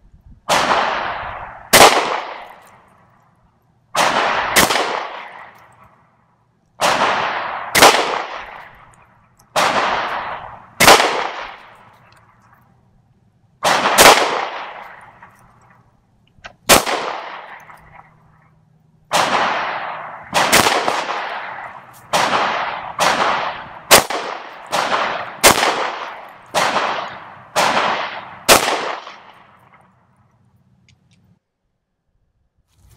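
FN 509 9mm semi-automatic pistol firing a string of ten single shots, each a sharp report with a long echoing tail. The shots come a few seconds apart at first and closer together in the second half.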